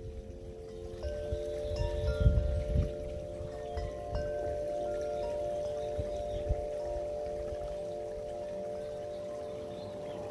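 Several steady ringing tones sounding together, chime-like, one of them pulsing, with short higher notes coming and going. Low rumbles swell underneath about two to three seconds in, and a single low thump comes past the middle.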